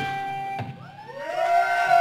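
Live rock band's electric guitar ringing out at the end of a song, cut off with a click about half a second in; then several tones slide upward and hold, swelling louder near the end.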